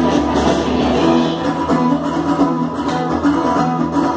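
Live rock band playing an instrumental passage: strummed acoustic guitar and electric guitars over a drum kit, with steady cymbal strokes.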